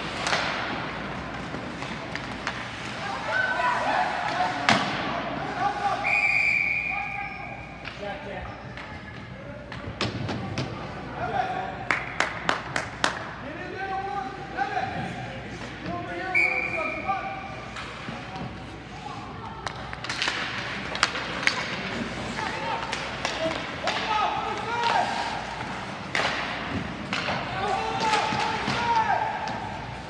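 Ice hockey game heard from the stands of an indoor rink: spectators talking and shouting throughout, with scattered sharp clacks and thuds of sticks and puck against the boards, a quick run of them about twelve seconds in. A short referee's whistle blast sounds twice, about six seconds in and again about sixteen seconds in.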